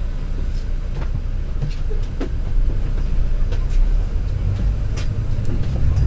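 Low, steady rumble of a moving bus heard from inside, engine and road noise, with scattered rattles and clicks from the body.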